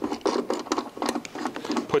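The spool-hub bolt on a MIG welder's wire spindle is being threaded in by hand, giving a quick, uneven run of light clicks and scratching.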